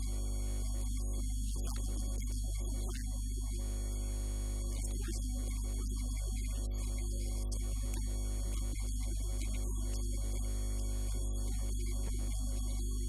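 Steady electrical mains hum, a low buzz at an even level throughout.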